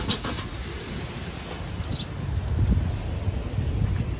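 Outdoor background noise: a low, uneven rumble, with a brief rustle at the start and a short high chirp about two seconds in.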